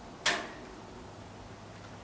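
A single sharp click about a quarter of a second in, then only a faint steady low hum.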